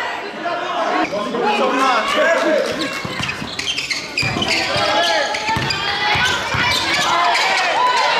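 Basketball dribbled on a gym floor, a run of bounces in the middle of the stretch, among voices of players and spectators.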